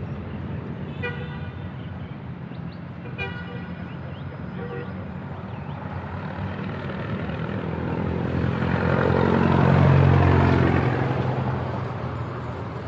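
City street traffic: a motor vehicle engine hums steadily nearby, a horn gives short toots about a second and about three seconds in, then a vehicle passes close, loudest about ten seconds in.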